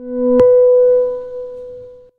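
Short synthesized music sting for an animated logo: a low note swells in, a sharp click sounds about half a second in, and a note an octave higher rings on and fades out by the end.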